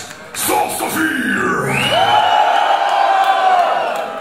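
A loud shout held on one pitch for about two seconds, after a few quick words.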